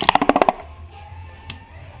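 Collapsible pleated plastic lantern body pulled open by hand: a quick run of about a dozen clicks in half a second as the pleated sections snap out, then one faint click about a second and a half in.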